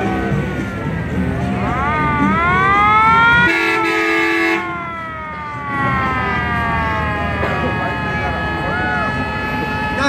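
A vehicle siren wails up in pitch, and a horn blasts for about a second. The siren then winds slowly down in pitch over several seconds.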